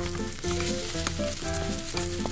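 Shredded potato pancake frying in oil in a nonstick pan, a steady sizzle, as a slotted metal spatula presses and scrapes at it.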